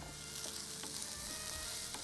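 Raw jackfruit usili mixture frying in a shallow pan with a steady soft sizzle, stirred with a wooden spatula.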